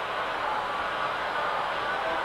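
Steady rushing noise over an offshore racing powerboat's crew intercom, as the open headset microphones pick up wind and engine noise. It sounds thin and narrow, like a radio channel.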